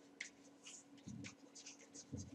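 Faint scratching of a pen writing: a scatter of short, quiet strokes, with a soft low sound about a second in.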